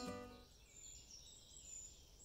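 Acoustic guitar music fading out about half a second in, then faint birdsong of several small birds with high chirps and trills.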